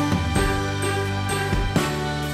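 Music with sustained chords and recurring percussive hits.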